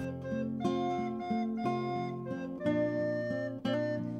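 Instrumental background music led by a plucked acoustic guitar, its notes changing about every half second.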